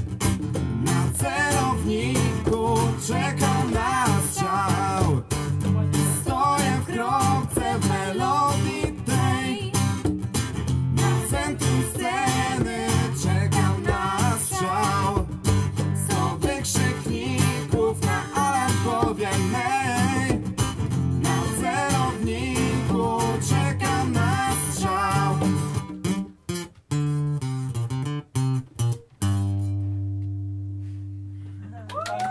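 Live acoustic song: a steel-string acoustic guitar strummed under a wavering sung melody. Near the end the playing breaks into a few separate stop hits, then a final chord rings out and fades.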